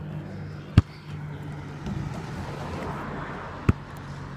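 Two sharp knocks about three seconds apart, a basketball bouncing on the pavement, over a faint steady low hum.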